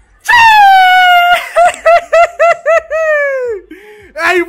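Someone screaming in excitement as they cheer a goal. It starts with one long, high held yell, then a quick run of about six short yelps, and ends in a long yell that falls in pitch.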